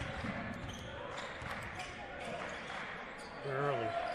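Basketball being dribbled on a hardwood gym floor, faint knocks over a steady low murmur of players' voices and a small crowd in the gym.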